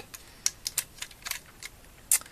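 Plastic Lego pieces clicking against each other and snapping into place as a model is handled and pressed together: a scatter of small, sharp clicks at uneven spacing.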